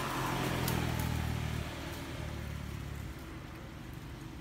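A low engine hum with a rushing swell, loudest in the first second and a half and fading away by about three seconds in, with one sharp click early on.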